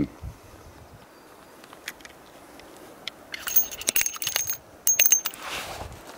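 Spent .357 Magnum brass cases ejected from a revolver's swung-out cylinder, clinking and ringing against each other in a quick cluster of metallic clicks about halfway through, then a second short clatter a second later.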